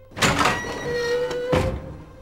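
A door banging open with a sudden loud clunk, followed by a short squeak and a second sharp knock about a second and a half in.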